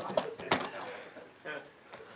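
Handling noises as straps are fastened over a plush toy on a table top: two sharp knocks in the first half second, then fainter rustles and ticks.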